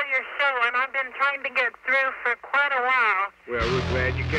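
A thin-sounding person's voice, cut off in the highs as if heard over a radio or telephone, swooping widely up and down in pitch. A bass-heavy music track cuts in near the end.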